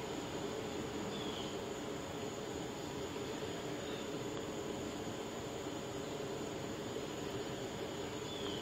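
Steady outdoor background hum and hiss on a body-worn camera's microphone, with two faint short chirps, about a second in and about four seconds in.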